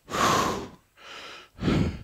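A man breathing hard into a headset microphone, three loud, noisy breaths in quick succession. He is out of breath from a round of jumping jacks.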